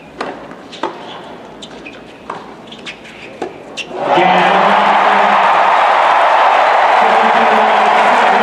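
A tennis rally: the ball is struck sharply off the rackets about eight times, starting with the serve. About four seconds in, the crowd erupts into loud, sustained cheering and applause as the point is won.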